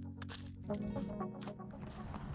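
Background music with sustained low chords that change about two-thirds of a second in, over a quick percussive pattern.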